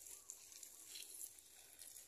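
Near silence: faint outdoor background with a soft high hiss.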